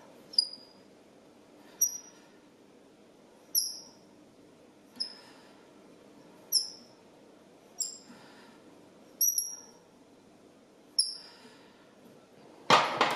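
Fly-tying bobbin squeaking as thread is pulled off and wound onto the hook: a short high squeak about every one and a half seconds, eight in all.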